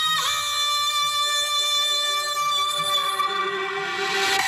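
Music played through a large outdoor DJ sound system during a soundcheck: a sustained electronic melody of long held notes, with a brief pitch bend just after the start and no bass beat yet.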